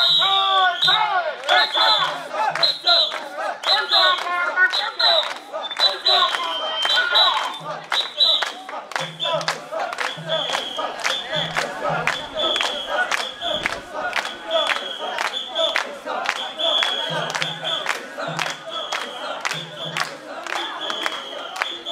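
Mikoshi bearers chanting in unison as they carry a portable shrine, over crowd noise, loudest in the first few seconds. Sharp clacks keep a steady beat of about two to three a second, and a high steady tone sounds in short blasts.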